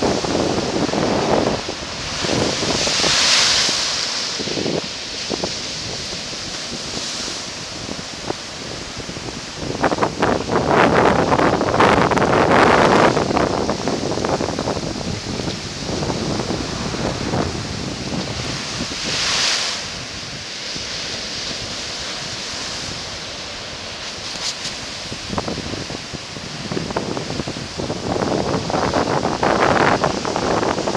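Ocean surf breaking over a low rock ledge and washing up the sand, a rushing noise that swells and falls with each wave, loudest about ten seconds in and again near the end. Wind buffets the microphone throughout.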